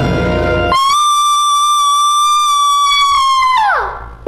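The end of a musical-theatre song: the accompaniment cuts out and one high note is held alone for about three seconds, then slides steeply down and stops.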